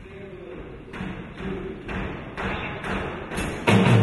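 A live band's count-in: about six even taps, roughly two a second, over quiet lingering guitar tones. Just before the end, the band comes in loudly with electric guitars and drums.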